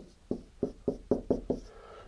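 A marker tapping on a whiteboard: seven quick, evenly spaced taps, about four a second, then a pause.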